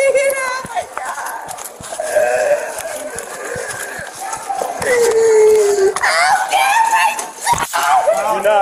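A woman wailing and crying out in long, drawn-out wordless cries of distress, one held for about a second and slowly falling in pitch. Near the end there is a single sharp knock.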